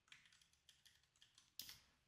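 Faint computer keyboard typing: a quick run of key presses, then one slightly louder click about a second and a half in.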